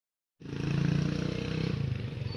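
An engine running steadily, starting about half a second in.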